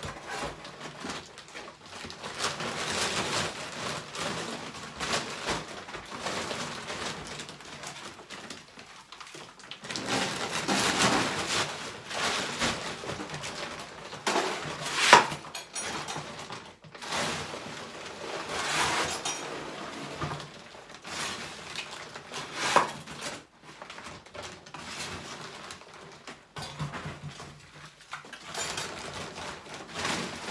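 Irregular clattering, scraping and rustling as rubble is gathered by hand into builder's sacks at the foot of a wall, with two sharper knocks in the middle of the stretch.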